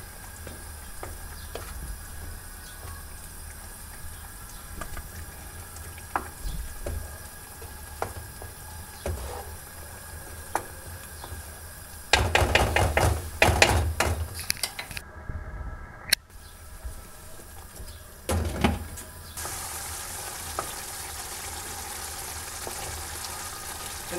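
Tomato sauce simmering and sizzling in a frying pan while a wooden spoon stirs it, with occasional taps of the spoon on the pan. About halfway through there are a few seconds of louder stirring and scraping against the pan.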